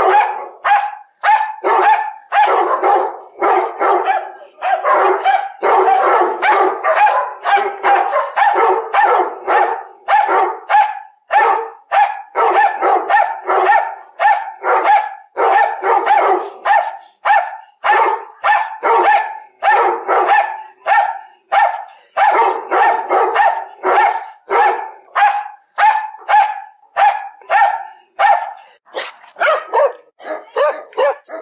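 A dog barking over and over in quick succession, about two barks a second, with hardly a pause.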